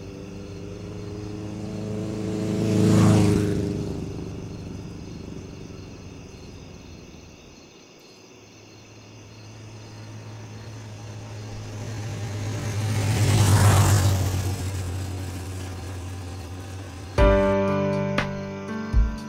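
A motorcycle passes by twice, about ten seconds apart. Each time its engine swells as it approaches and fades as it moves away.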